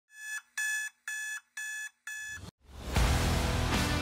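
Five short electronic beeps at an even pace of about two a second, followed about two and a half seconds in by the start of rock intro music with electric guitar.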